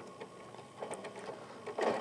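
Janome Continental M17 sewing machine running slowly and quietly, with a few light clicks. Its AcuStitch stitch regulator slows the needle while the fabric is barely moving.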